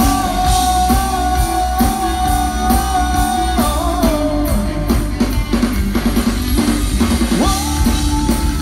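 A live band plays with drum kit and electric bass while the singer holds one long note for about three and a half seconds, then drops away from it. Near the end he starts another long held note.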